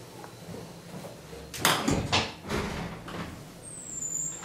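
1980 KONE hydraulic platform lift running with a steady low hum. Halfway through there is a cluster of clattering knocks and rattles, and a short high squeak near the end.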